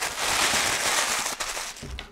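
Thin plastic bag crinkling as it is crumpled in the hand: a dense, continuous crackle that stops just before two seconds in.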